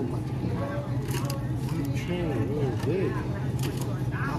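Steady low hum with faint, wordless voices behind it, and a few light clicks and crackles as a clear plastic snack tub with keys hanging from the hand is handled.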